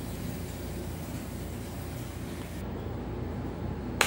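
Steady room noise: a low hum with an even hiss and no distinct events, the highest part of the hiss dropping away about two-thirds of the way through.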